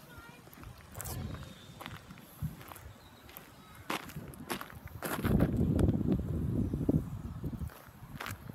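Footsteps on a gravel path, with a loud low rumble on the microphone from about five seconds in until near the end.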